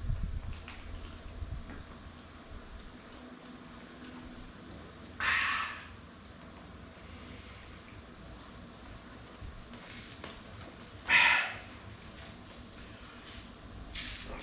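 A man drinking beer from a can, with two short, loud breathy exhales, one about five seconds in and one about eleven seconds in, over a quiet background.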